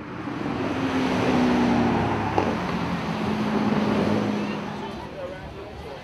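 A car engine running, fading in, holding and then fading away, its pitch dropping a little midway, like a car going past.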